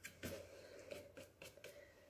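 Faint scratching of a nearly dry paintbrush dragged across a canvas in several short strokes. This is dry-brush technique, with little paint on the bristles, used to make a furry texture.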